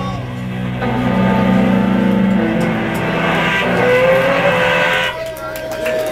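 Electric guitars ringing out through their amps as a rock song ends: the drums stop at the start, a sustained wash of guitar noise and feedback holds until about five seconds in and then cuts off, leaving a steady feedback tone that slides slightly upward.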